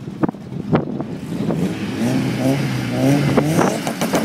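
Mitsubishi Lancer Evolution's turbocharged four-cylinder engine with an aftermarket exhaust, popping irregularly at first, then revved up and down several times from about halfway through as it holds on the start line before launch.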